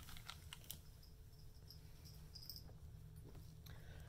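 Faint rustling and a few soft clicks of a T-shirt being pulled off over the head, mostly in the first second, over a steady low hum.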